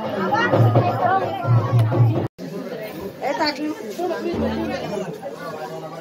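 Several people talking over one another, with music under the first couple of seconds. The sound cuts out briefly a little over two seconds in.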